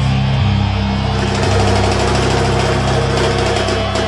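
Live rock band playing loudly, with electric guitar and bass holding low, sustained chords.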